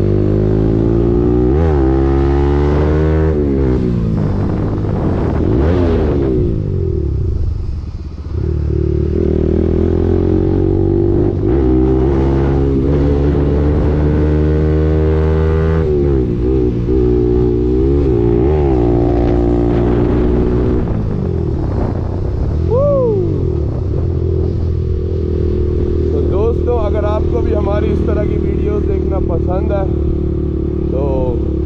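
Bajaj Pulsar 200NS single-cylinder engine running through an aftermarket Akrapovic exhaust while riding. The engine note climbs and falls several times with the throttle and gear changes, dipping briefly about eight seconds in when the throttle is shut, then settles to a steadier cruise.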